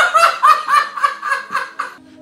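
A man laughing hard in a high-pitched run of repeated hoots, about four a second, tailing off near the end.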